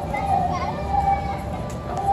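Children's voices and shouts from a fair crowd, with one high voice held over a low background rumble.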